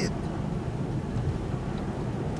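A low, steady rumble with no clear events, a pause in the talk filled only by background noise.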